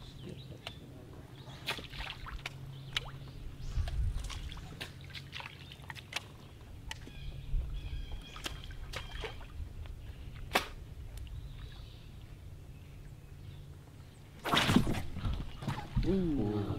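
Small water sounds around a boat on a lake: dripping and lapping, with scattered light clicks and ticks of fishing tackle over a steady low hum. A short, louder rush of noise comes about a second and a half before the end.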